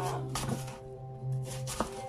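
Knife slicing through an apple onto a plastic cutting board, with two sharp taps of the blade meeting the board, about half a second in and near the end. Background music with steady sustained notes plays throughout.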